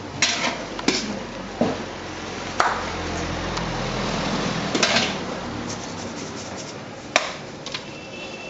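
Metal slotted skimmer clinking and scraping against a large steel pot as boiled spleen is lifted out and pressed into a bread roll: several sharp clinks at uneven intervals.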